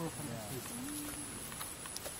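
A voice trailing off from an exclaimed "wow", with a brief low hum just after, then quiet, steady outdoor background noise.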